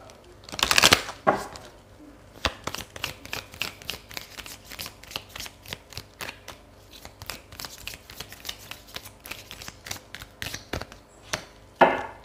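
A deck of round tarot cards being shuffled by hand. A loud rush of cards comes about a second in. Then a long run of quick, light card clicks and slaps follows, several a second, with a sharper burst near the end.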